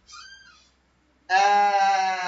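A drawn-out hesitation vowel in a person's voice, one long 'aaah' held at a steady pitch for about a second, starting just past the middle, after a faint brief sound near the start.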